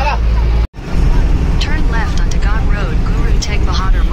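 Tour bus on the move, heard from inside the cabin: a steady low engine and road rumble, broken by a brief cut a little under a second in, with voices chattering over it.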